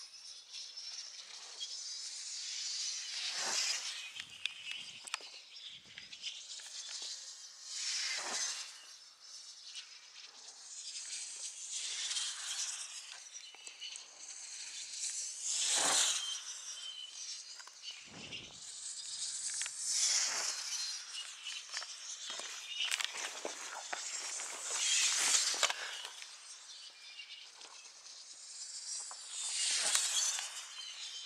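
Radio-controlled dynamic-soaring gliders making repeated fast passes: a rushing hiss that rises and falls about every four seconds.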